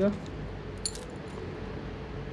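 Thin metal necklace chains and pendants clinking as a hand lifts them from a display rack: one short, bright jingle about a second in, over a faint steady hum.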